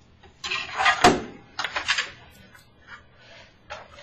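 Rustling and clattering as plastic chest tube drainage tubing is handled and coiled up, with a sharp knock about a second in and a brief rustle again near the end.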